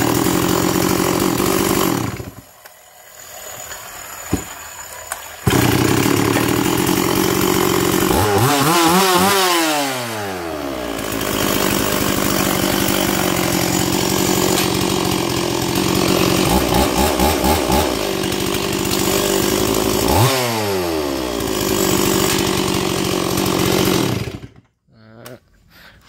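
Stihl 026 Magnum 49 cc two-stroke chainsaw engine running, with two quick throttle blips whose pitch rises and falls, and a quieter stretch of a few seconds after about two seconds. It idles evenly and answers the throttle sharply, and the engine cuts off shortly before the end.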